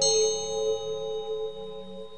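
Meditation music: a steady droning chord under a bell-like metallic strike at the start, whose high ringing tones die away as the whole sound fades.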